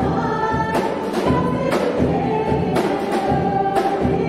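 Live worship band playing a gospel song: voices singing held notes over piano and guitar, with drums and cymbals keeping a steady beat of about two strikes a second.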